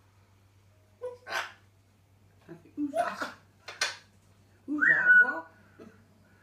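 African grey parrot vocalizing in its cage: four short calls and mimicked sounds, the last about five seconds in ending in a whistle that drops in pitch and then holds.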